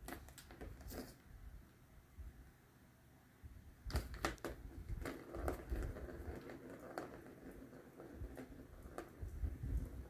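Cat batting at a plastic circular ball-track toy with a cardboard scratch pad: scattered clicks, knocks and scrapes. It gets busier from about four seconds in.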